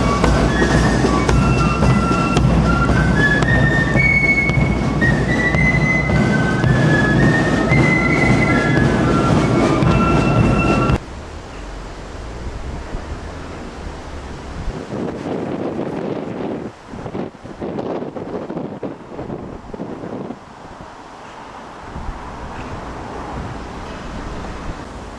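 A military marching band playing a march with drums as it passes close by. About eleven seconds in, the music cuts off suddenly, leaving a quieter outdoor background noise.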